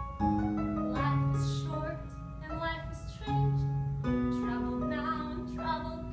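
Piano accompaniment playing sustained chords, with a woman's singing voice coming in over it.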